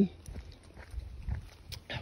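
Dogs breathing noisily close by, with a few short low sounds about a second in.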